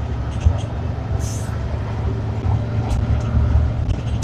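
Ikarus 435 articulated bus heard from inside while under way: steady low rumble of its diesel engine and running gear, with a short high hiss about a second in.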